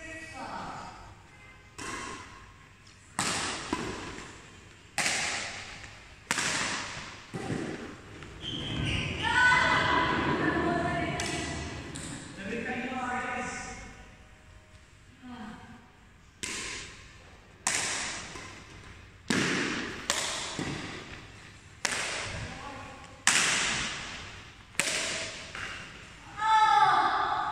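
Badminton rackets striking a shuttlecock in a rally: sharp smacks about a second apart, echoing around a large hall. Around the middle the strokes stop for a few seconds while people's voices are heard.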